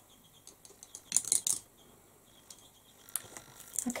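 Light clicking and clattering of makeup tools, a brush and an eyeshadow palette, being handled and tapped. There is a quick cluster of sharp clicks about a second in and a few more near the end.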